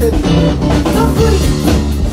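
A band playing live: guitar over bass guitar and a drum kit keeping a steady beat.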